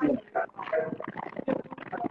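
A man's voice coming through a video call, low and broken into short sounds between louder stretches of talk.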